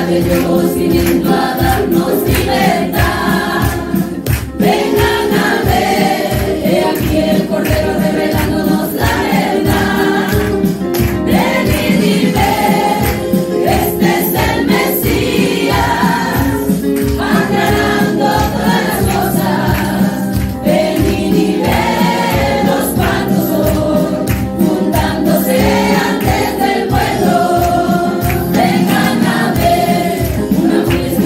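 A group of women singing a gospel song together into microphones, amplified, with a steady beat underneath.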